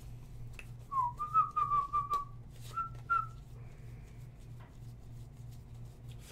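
A man whistling a short run of notes about a second in, then two more briefly around three seconds, over light clicks of trading cards being flipped through by hand and a steady low hum.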